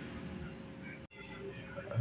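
Faint steady low background rumble and hum, broken by a sudden brief dropout about halfway through.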